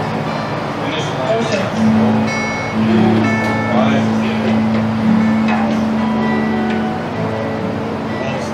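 Live worship music: acoustic guitar playing, with a long held low note and a woman's voice singing or praying over it.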